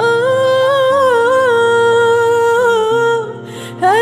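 A woman's voice holds one long wordless note with a slight waver over soft instrumental accompaniment of sustained chords. The note breaks off about three seconds in, and a new note slides upward just before the end.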